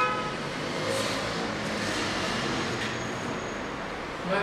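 Steady even background noise with no speech, opening with the brief tail of a man's laugh.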